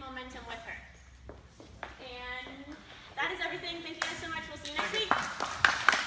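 People talking, then applause: hand clapping starts about four seconds in and gets louder toward the end.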